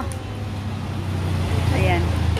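Low, steady rumble of a motor vehicle on the street, swelling about one and a half seconds in, with faint voices near the end.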